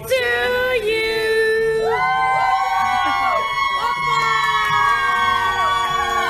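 Singing: one voice holds a note for about two seconds, then several voices come in together on long held notes.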